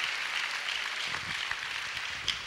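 Congregation applauding, many hands clapping together.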